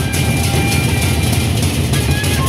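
Gendang beleq ensemble playing: large Sasak double-headed barrel drums beaten in a fast, dense, rolling rhythm under a steady wash of clashing cymbals.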